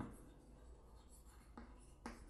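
Faint scratching of chalk writing on a chalkboard.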